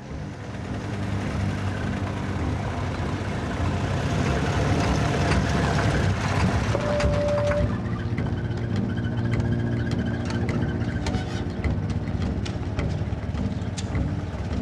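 Vintage 1920s truck engine running steadily as the truck drives up and stops, with a brief squeal about seven seconds in and scattered clicks and rattles afterwards.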